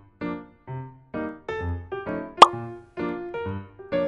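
Light, bouncy background music of short plucked notes. A little past halfway comes a single loud, quick 'plop' pop sound effect that sweeps upward in pitch.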